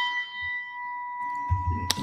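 A single bell-like chime struck once and ringing out, fading gradually over about two seconds.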